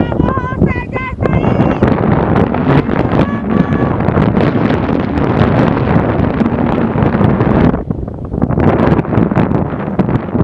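Wind buffeting the microphone hard aboard a boat at sea, a loud, rough rush that eases for a moment near the end. A high voice calls out briefly about a second in.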